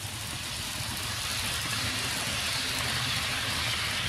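HO scale model train running along sectional plastic-roadbed track: the locomotive's motor and the wheels give a steady whir and rattle that grows slowly louder as the train approaches.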